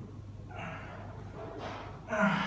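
A man breathing hard from the effort of archer push-ups: two sharp, noisy breaths, about half a second in and again a second later, over a steady low hum.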